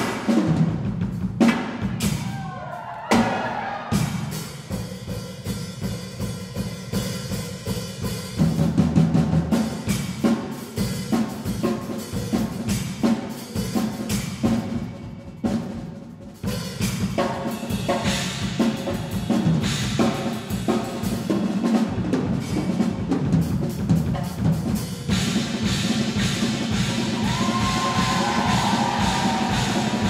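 A Yamaha drum kit played fast, with busy strokes on snare, toms and bass drum under cymbals. The playing gets denser and brighter in the last few seconds.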